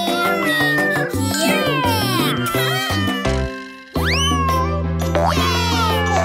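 Cartoon cat meowing over an upbeat children's song backing track with no vocals. The music fades briefly just before four seconds in, then comes back with a quick rising sweep.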